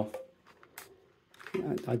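Man's speech at both ends, with a near-quiet gap in between that holds a couple of faint clicks from the plastic scanner body and its detached front panel being handled.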